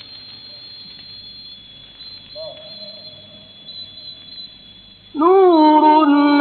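A pause in a live Quran recitation, with only faint background voices. About five seconds in, the male reciter's voice comes in loudly, swoops up and back down, then holds a long sustained note, heard through a narrow-band old recording.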